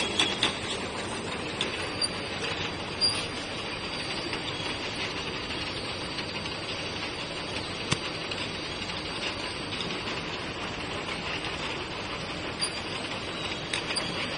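Automatic vacuum lug-lid capping machine and its jar conveyor running, a continuous even mechanical clatter broken by a few sharp clicks.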